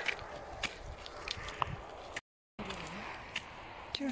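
Footsteps scuffing and crunching on a stony dirt path, with scattered small clicks of grit underfoot, broken by a brief dropout to silence a little past halfway.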